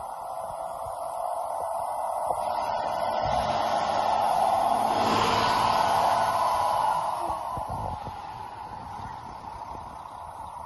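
MaxxForce diesel engine of a day-cab semi tractor running as the truck drives up close. It grows louder to a peak about five to six seconds in, then eases off.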